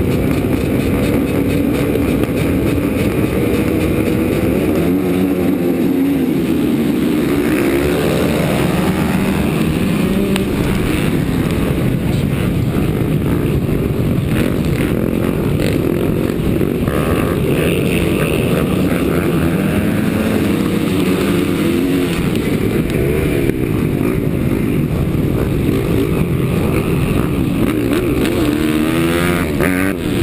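Yamaha YZ125 two-stroke motocross engine and a pack of other dirt bikes racing from the start, heard close up from the rider's helmet; the engine note rises and falls repeatedly as the rider works the throttle through the gears.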